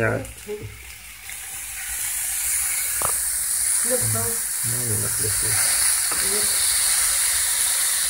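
Meat and vegetable skewers sizzling on a hot ridged grill pan. The sizzle swells about two seconds in, after a skewer is laid on the pan, and then holds steady. There is one sharp click about three seconds in.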